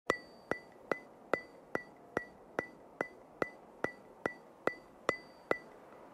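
A steady run of sharp, wood-block-like ticks, about two and a half a second, each with a short high ring; they stop shortly before the end.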